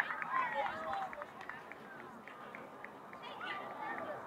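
High voices of several girls talking and calling out, loudest in the first second and then fading to fainter chatter, with scattered light clicks.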